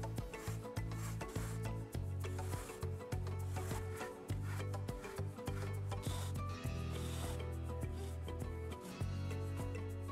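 Background music with a steady bass line, over the rubbing and scraping of a thick rope being pulled through punched holes in stiff vegetable-tanned leather.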